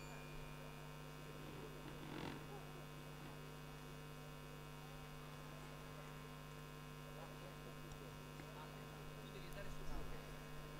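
Faint steady electrical hum with nothing else going on.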